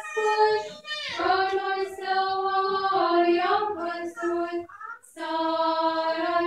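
Orthodox nuns singing a liturgical chant together as one melody line, in long held notes that step from pitch to pitch, with brief pauses about one second in and again about five seconds in.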